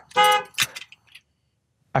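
A brief electronic tone from the Ford, followed by a sharp click about half a second in, while the key fob lock buttons are being pressed in keyless-remote programming mode.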